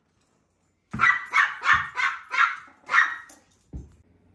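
Small dog barking about six times in quick succession, high yaps starting about a second in, at a tennis ball held above it. A short thud near the end.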